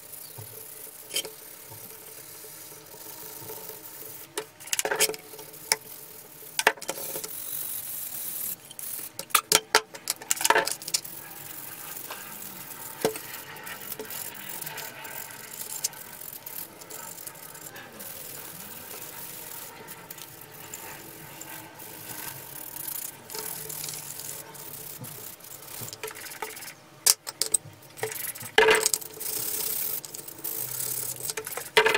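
Fine sandpaper rubbing by hand over a lamp housing and its parts, with scattered sharp clicks and knocks as the parts are handled on a plastic tray; the knocks bunch up about ten seconds in and again near the end.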